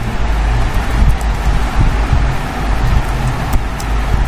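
Loud steady low rumble with a hiss of background noise, with a few faint clicks of keyboard typing.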